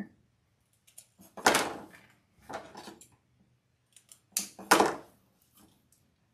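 Scissors snipping into burlap deco mesh: several crisp cuts with pauses between, the loudest about a second and a half in and a pair close together near the fifth second.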